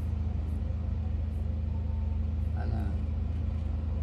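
A steady low hum of a few fixed low tones, typical of a running appliance or electrical hum, with a few faint high ticks.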